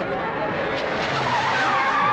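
Car tyres skidding on the road as a vehicle brakes hard, a continuous noisy screech.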